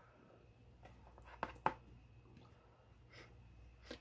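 Mostly quiet, with a few faint clicks and scrapes of a spatula against a casserole dish as a piece of lasagna is lifted out: two about a second and a half in, and a weaker one near the end.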